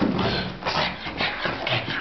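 A pug's paws thudding down carpeted stairs in a quick, uneven run of soft knocks that starts suddenly.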